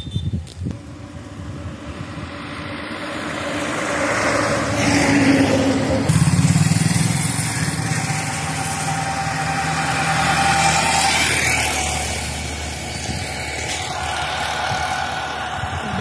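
A motor vehicle's engine approaching and passing: it grows louder, its pitch drops as it goes by about six seconds in, and then it slowly fades.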